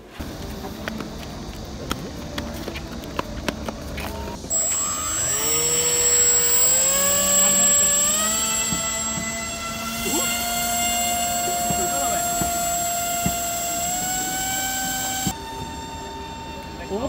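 Electric motor and propeller of a foam RC ground-effect craft model spinning up about four seconds in, its whine climbing in steps as the throttle is opened and then holding high while the craft runs across the water. Before that, only background noise with scattered clicks.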